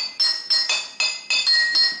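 Outro jingle of high, bell-like chime notes struck in quick succession, about four a second, each ringing briefly, changing pitch from note to note like a melody.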